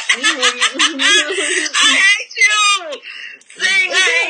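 A person laughing loudly, with a quick run of short laughs at the start, then more drawn-out laughing.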